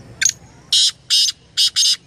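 Male black francolin (kala teetar) calling: one short high note, then four loud notes in quick succession.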